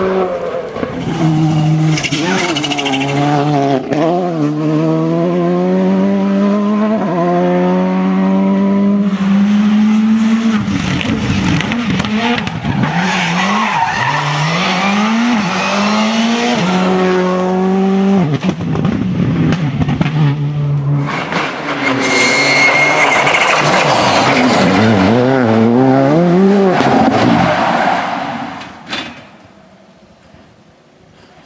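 Skoda Fabia Rally2 rally cars with turbocharged 1.6-litre four-cylinder engines, driven flat out on a tarmac stage. The engine note climbs in pitch through each gear and drops back at every upshift, again and again. A tyre squeal comes about two-thirds of the way in, and the sound fades out near the end.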